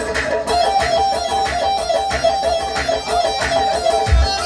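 Amplified live wedding band music: a fast instrumental melody of rapidly repeated plucked-string notes.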